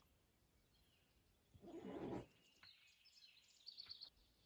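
A short animal call lasting about half a second, a little under two seconds in, followed near the end by faint, high-pitched bird chirps in the woods.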